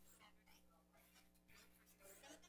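Near silence: room tone with a low steady hum and a faint, distant voice.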